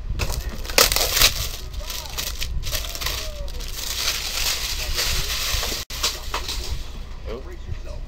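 Cardboard box being handled and rubbed, a continuous rustling, crackling scrape that is loudest about a second in. The sound cuts out for an instant near six seconds.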